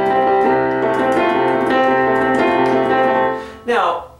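Casio Privia digital piano in its piano voice playing chords struck again and again in a steady rhythm over a held low note. The playing stops a little after three seconds in, and a man's voice starts near the end.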